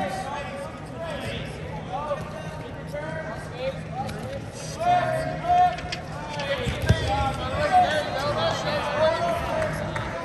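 People's voices calling out and talking throughout, with one sharp thump about seven seconds in.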